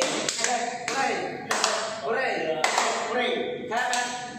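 Voices of a group of people with several sharp taps among them, a quick cluster at the start and then about one a second.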